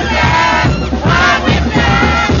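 Festival band music with a steady low beat, under a packed crowd of chinelo dancers shouting and yelling as they jump.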